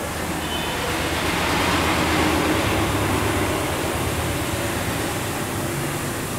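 A steady rushing noise with a low hum underneath, swelling about two seconds in and easing off toward the end.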